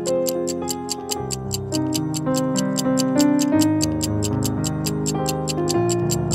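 Soft background music with sustained keyboard-like notes, over a fast, steady ticking of a countdown timer, about four ticks a second.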